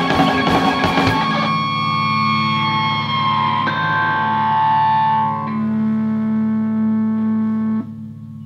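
Live rock band with distorted electric guitars: the drums stop about a second in and the guitars and bass hold a final chord that rings on with sustain, then cut off sharply near the end.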